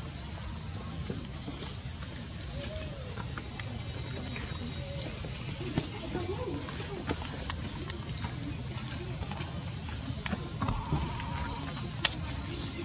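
Indistinct background voices over a steady low rumble, with scattered small clicks and a short buzzy tone near the end.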